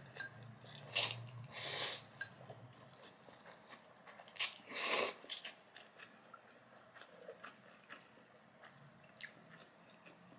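Close-miked mouth sounds of eating spicy instant noodles: several loud slurps in the first five seconds, then softer wet chewing.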